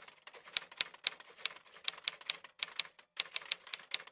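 Typewriter typing sound effect: a run of irregular key clicks, several a second, with two brief pauses late on.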